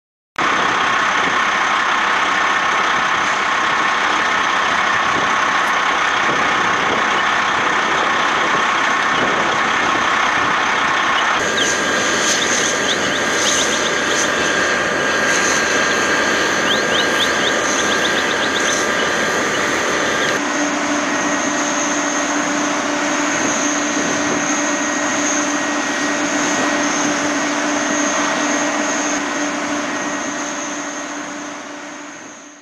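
Firefighting hoses spraying water at full flow, a loud steady rush, over a running engine with a steady pump-like whine. It starts abruptly about half a second in and changes character abruptly twice, about a third and two-thirds of the way through.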